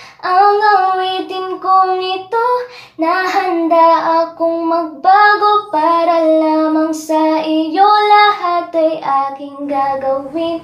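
A woman singing a slow Tagalog love song in a high voice, unaccompanied, holding long notes between short breaths.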